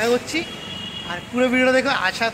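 A man talking, with street traffic behind him. In a short pause in his speech, a faint thin high tone is held for under a second.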